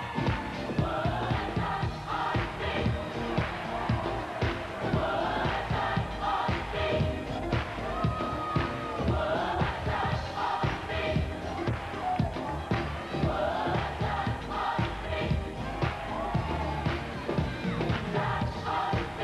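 Large gospel choir singing an up-tempo song live with a band and a steady drum beat, the crowd's voices mixed in.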